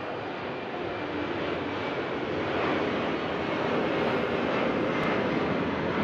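An airplane passing low overhead: a steady rushing engine noise with no clear tone, slowly growing louder and peaking near the end.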